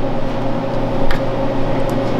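Steady mechanical hum of kitchen machinery with a low, even tone, and a single short knock about a second in.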